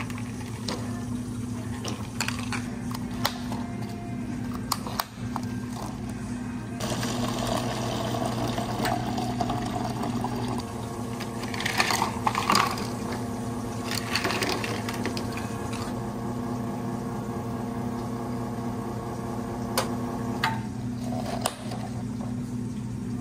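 Espresso-bar work sounds over a constant low machine hum: ice clicking and clattering in plastic cups and a scoop, then an espresso machine's pump running steadily for about fourteen seconds as shots pour over ice, stopping near the end.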